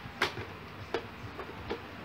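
Sharp clicks and taps of a hinged plastic-bowl model being handled and closed. The loudest click comes about a quarter second in, followed by three softer ones.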